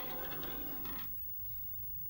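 Rough diamonds clicking and rattling together on a wooden tabletop under a hand: a dense run of small clicks lasting about a second.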